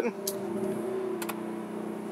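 Motorhome's built-in generator running just after being started from the interior start switch: a very quiet, steady hum with a few faint clicks.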